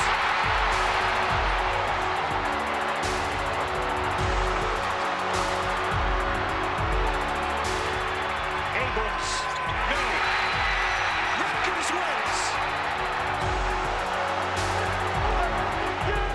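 Large arena crowd cheering and roaring after a game-winning three-pointer, mixed with background music that has a steady low beat.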